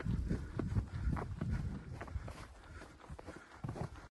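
Footsteps walking through snow, about two steps a second, over a low rumble of wind on the microphone; the steps get quieter after the middle.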